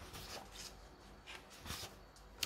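Faint rustling of paper pages as a book's pages are turned, with a few soft swishes and light ticks.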